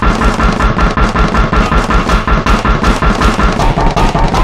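Remixed theme music: a short sample looped in a rapid stutter, about six or seven hits a second with deep bass, so fast that it rattles like gunfire.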